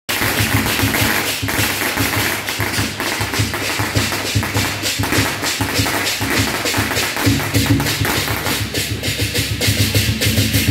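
Loud temple-procession music driven by a fast, steady drum beat with sharp percussion strikes.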